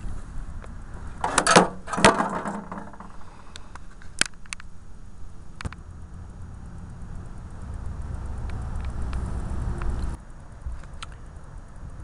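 Handling noise from cleaning lint out of a small stacked dryer's lint screen and cowl: a few loud knocks and rattles of the metal parts in the first couple of seconds, then scattered clicks. A low rumble builds for a few seconds and cuts off near the end.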